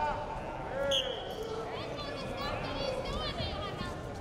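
A referee's whistle blown once, briefly, about a second in, restarting the bout, over voices calling out in the hall.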